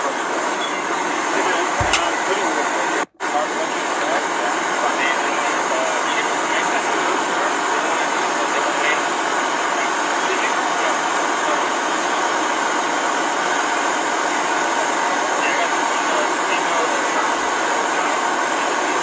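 Indistinct voices over a steady, dense outdoor din, with no clear words. The sound cuts out completely for a moment about three seconds in.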